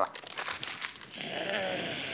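Crumpled paper rustling and crinkling as hands rummage through scraps, with quick crackles in the first second. About a second in, a steady hiss joins, with a faint creature-like voice beneath it.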